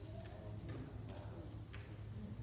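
Quiet pause in a church sanctuary: a steady low hum of the room with a few faint, sharp ticks, the clearest near the end.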